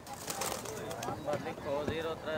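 Caged domestic pigeons cooing softly, with faint voices of people talking in the background.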